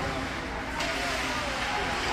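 Indoor ice hockey rink ambience: indistinct voices over a steady low hum, with a brief high hiss a little under a second in.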